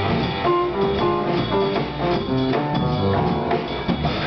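Live jazz band playing: a saxophone melody over piano, bass and drums.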